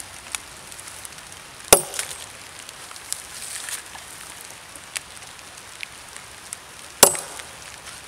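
Two sharp chops of a machete blade into a log, about five seconds apart, with small clicks and rustles between them.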